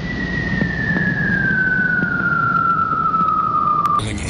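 A single whistling tone gliding slowly and steadily downward in pitch over a low rumble, cut off abruptly at the end.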